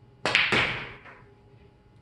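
Draw shot on a pool table: the cue tip strikes the cue ball with a sharp click about a quarter second in, and a moment later the cue ball clacks into the object ball, the sound dying away within about a second.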